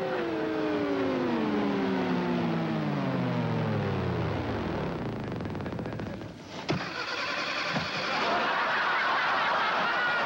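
Space shuttle engine sound effect winding down, a falling tone that slides lower and lower over about five seconds and dies away as the craft runs out of fuel. Then a click, followed by a steady whirring hum.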